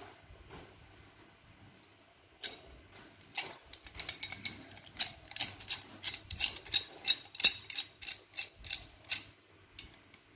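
MCC 300 mm pipe wrench handled and adjusted by hand: its hook jaw and adjusting nut give a quick, irregular run of metal clicks and rattles. The clicking starts a couple of seconds in and stops shortly before the end.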